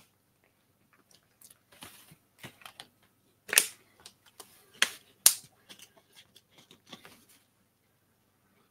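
A drinking glass and small objects handled on a tabletop: an uneven run of light clicks and knocks, with three sharper knocks in the middle.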